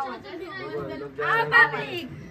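Speech: several people talking over one another, with one voice loudest about one and a half seconds in.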